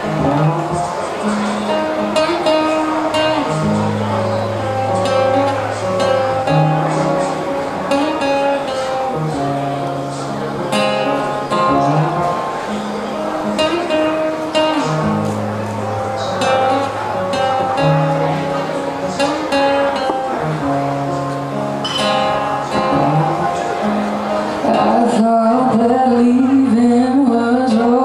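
Solo acoustic guitar intro on a sunburst jumbo acoustic, picking a repeating chord pattern with ringing bass notes. A woman's singing voice comes in near the end.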